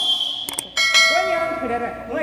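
A quick click, then a bright bell chime that rings out and fades over about a second: the click-and-notification-bell sound effect of a YouTube subscribe-button overlay.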